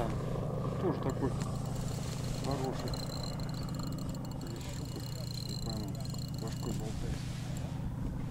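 Small boat motor running steadily with a low drone as the inflatable boat moves along slowly. A thin high whine joins about three seconds in and stops near the end.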